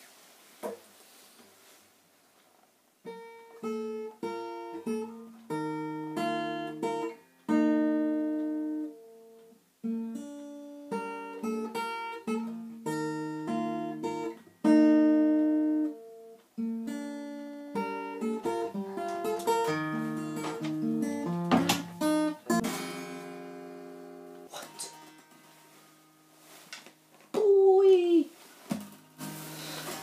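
Acoustic steel-string guitar with a capo, played fingerstyle: a picked melody of single notes and chords that starts about three seconds in. The playing gets denser around the middle and breaks off near the end.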